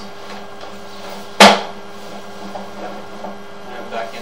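A single sharp knock about a second and a half in, over a steady low hum.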